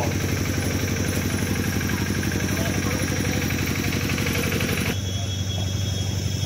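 An engine running steadily at idle, a fast even pulsing hum, with its sound shifting a little near the end.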